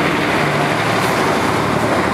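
A vehicle running close by: a loud, steady noise with no pauses.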